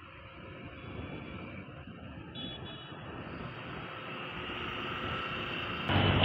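Road traffic noise: a steady rumble of vehicles that grows gradually louder.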